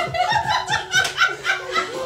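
A woman laughing, a run of short ha-ha bursts about four a second.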